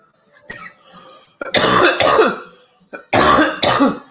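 A man coughing hard after a hit of cannabis concentrate from a glass dab rig: two pairs of loud, harsh coughs, the first about a second and a half in and the second near the end.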